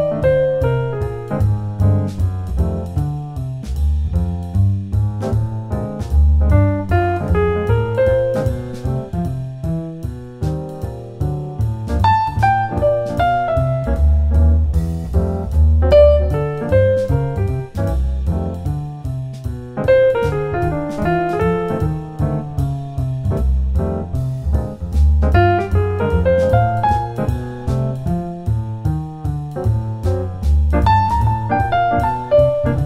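Jazz piano phrases: a short motif is played, followed by a rest, then the same rhythm comes back with different notes starting two beats later (rhythmic displacement onto beat three). This happens several times over a bass line and a light regular drum beat.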